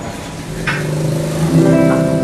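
A live band starts to play: after a short sharp hit under a second in, a held keyboard chord with a bass note comes in about one and a half seconds in and holds steady.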